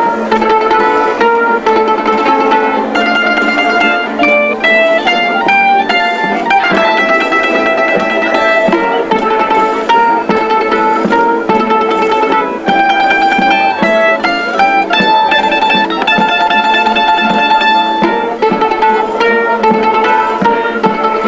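Folk string band of lutes and guitars playing a melody of quickly plucked notes over strummed chords.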